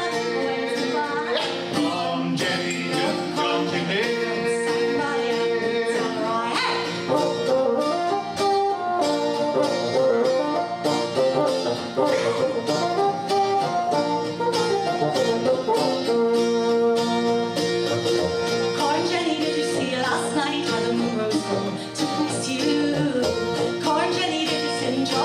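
Live folk instrumental break: a bassoon plays long held melody notes over a strummed acoustic guitar.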